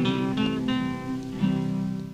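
Guitars on a 1933 78 rpm record playing the closing bars without voice: a few picked notes, then a final strummed chord about one and a half seconds in that rings on.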